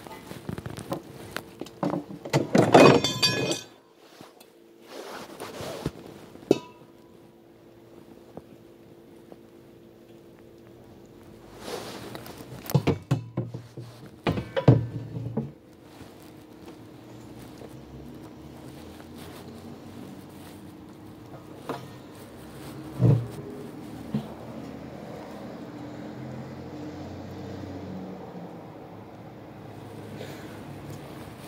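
Scattered knocks and clunks from handling an RV propane tank and its tightly fitted connection. A loud flurry with a ringing metallic clink comes a few seconds in, more knocks follow in the middle and a couple near the end, over a steady low hum.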